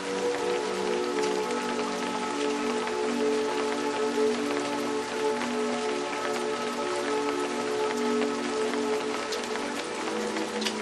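Steady rain falling, with scattered individual drops, mixed with slow music of long held notes that change every second or two.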